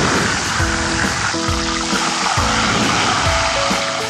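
Background music with a steady beat over a loud, steady rushing hiss of flames flaring up from a pot on the stove; the hiss fades near the end.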